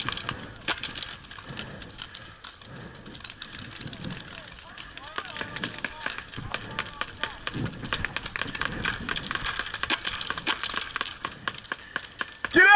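Paintball markers firing across the field in rapid, irregular strings of sharp cracks, with faint distant voices shouting.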